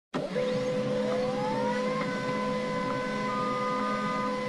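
A whirring hum with a whine that rises for about two seconds and then holds steady among several other steady tones, like a machine spinning up.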